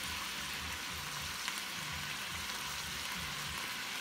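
Sliced sausage with onions and bell peppers sizzling steadily in a stainless steel pot as it fries.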